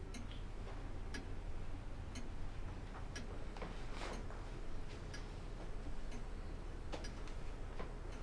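A clock ticking slowly and evenly, about once a second, over a low steady room hum.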